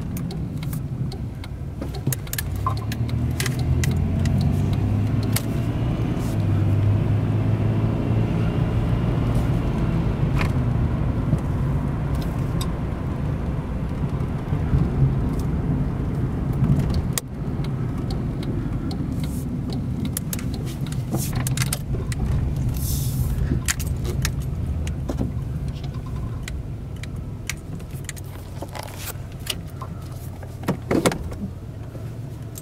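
The 1987 Buick LeSabre's 3.8-litre V6, heard from inside the cabin while driving with the hood removed, so the engine is much louder than usual. It pulls away with its pitch climbing over the first several seconds, runs steadily, drops off sharply about halfway, then eases down toward the end, with scattered light clicks and rattles throughout.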